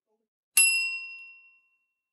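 A single bright, bell-like ding, struck once and ringing away over about a second.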